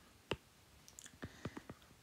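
A stylus tip tapping and clicking on a tablet's glass screen during handwriting: one sharper click about a third of a second in, then several lighter ticks in the second half.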